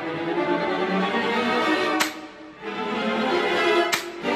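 Orchestral whip (slapstick), two hinged wooden boards slapped together, cracking twice, about halfway through and again near the end, over a string section playing sustained chords.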